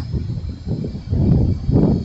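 Wind buffeting the microphone: a low, uneven rumble that swells and fades in gusts.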